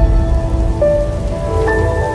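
Channel logo sting: held electronic notes that step to new pitches every second or so over a heavy low rumble and a crackling, rain-like noise, slowly fading.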